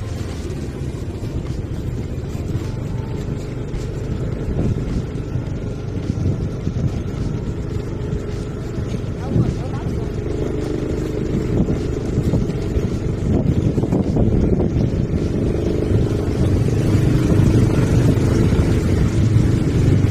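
Motorcycle engine running steadily while riding along at road speed; it gets gradually louder over the second half.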